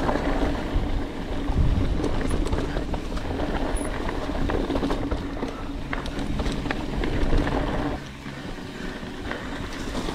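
Mountain bike riding fast down a dirt singletrack, heard from a camera on the bike: a steady rumble of tyres on dirt, with the bike rattling and clicking over bumps. It gets a little quieter about eight seconds in.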